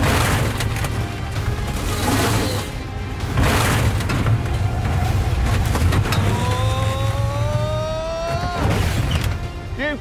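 Heavy motorhome engines running hard, with about four loud crashes as the RVs ram each other, the first right at the start and the last near the end. A slowly rising whine sounds in the second half.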